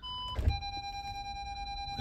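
A short two-pitch beep, then a clunk about half a second in as the van's gearstick goes into reverse, followed by a steady, unbroken warning tone from the VW T6's parking sensors, the continuous tone that signals an obstacle very close behind.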